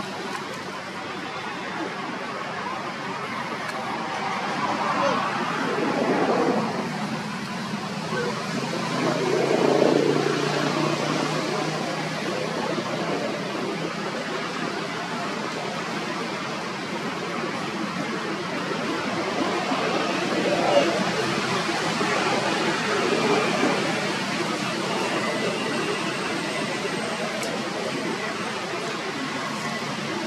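Indistinct voices over a steady rushing background noise, swelling louder a few times.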